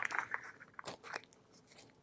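Faint clicks and crackles of a heavy glass jar of face cream being handled and its screw lid twisted, mostly in the first second.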